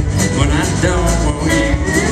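Country band playing live, with electric and acoustic guitars, electric bass and drums, the drums striking at a steady beat.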